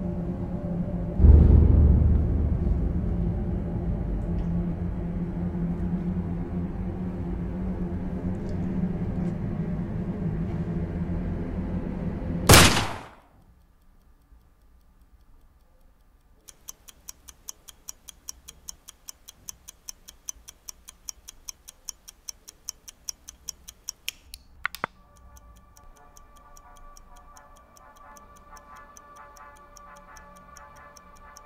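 A low, droning film score with a heavy boom about a second in builds until a single sharp, loud bang near the middle, and the sound cuts off at once. After a few seconds of quiet, a clock ticks about twice a second for several seconds and stops with a click, leaving a faint hum.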